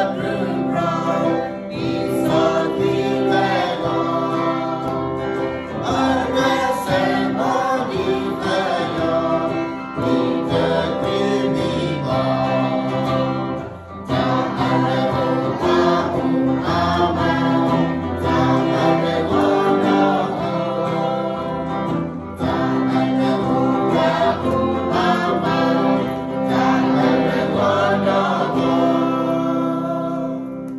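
A song sung by several voices over guitar accompaniment, with a brief dip about halfway through.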